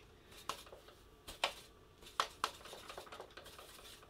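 Paintbrush working paint in a plastic watercolour palette, mixing a diluted orange. It gives a handful of faint, irregular light clicks and taps.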